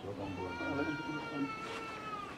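A drawn-out animal cry: one long, steady, high-pitched call lasting nearly two seconds and dropping slightly at its end, with a low voice-like sound under its first half.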